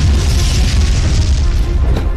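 A film explosion effect: the loud, sustained low rumble of the blast, with a music score underneath.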